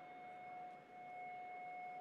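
A steady electronic whine holding two pitches at once over faint room noise. It is an audio-system glitch, and it cuts off at the very end.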